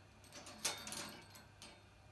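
Small metal jingle bells on a budgie's hanging cage toy jingling in a few brief shakes as the budgie knocks them, the loudest about two-thirds of a second in.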